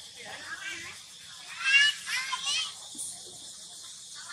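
Two short, high-pitched vocal cries in quick succession about two seconds in, over a steady high hiss.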